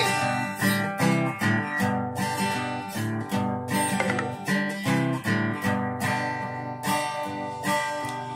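Solo acoustic guitar strummed in a steady rhythm, the chords changing every second or so, with no voice over it.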